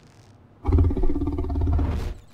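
Deep, rough growl from a large cartoon monster, starting about half a second in and lasting about a second and a half before stopping sharply.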